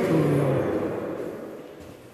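A man's voice holding a chanted note that ends about half a second in, then its echo fading in the room.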